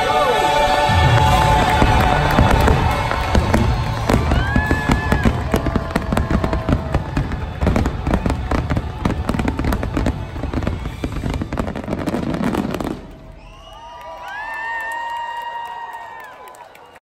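A dense volley of fireworks bursts, many rapid pops and deep booms, over loud show music, for about thirteen seconds. Then the bursts stop and only held musical notes remain.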